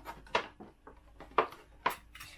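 Blade cutting a hole in the top of a plastic milk bottle: three sharp cracks of the plastic, the last two close together near the end.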